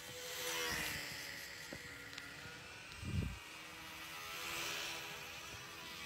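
Radio-controlled model airplane's motor and propeller buzzing as it flies low, the buzz swelling and fading twice as it passes. A single low thump about three seconds in.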